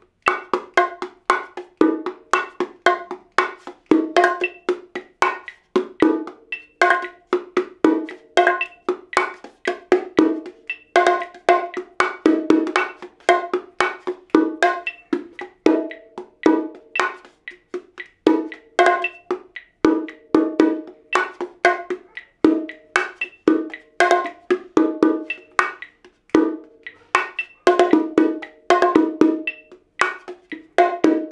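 Pair of bongos played by hand in the martillo pattern at about 115 beats a minute. It is a steady, unbroken stream of sharp strokes ringing at two pitches, the small high drum and the larger low drum.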